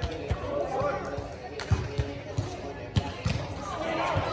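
A volleyball being struck by players' hands and forearms during a rally: several dull thumps a fraction of a second to a second apart, with players' voices calling out between them.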